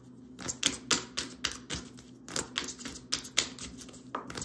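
Deck of oracle cards being shuffled by hand: a run of crisp, irregular card-edge clicks and flicks, roughly three a second, with a brief pause midway.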